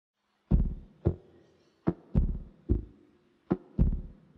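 Seven deep, low drum hits from the accompanying music track, in loose uneven pairs, each ringing out briefly before the next, the first about half a second in.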